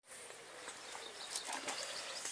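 Faint outdoor background noise with a few soft ticks, slowly getting louder toward the end.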